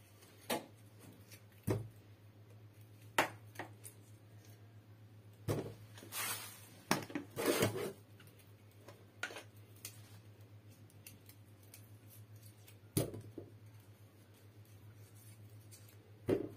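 Tomatoes being handled at a kitchen sink: scattered light knocks and clicks as they are picked from a metal bowl and set into a pot, with a few short rustling bursts in the middle. A faint low hum runs underneath.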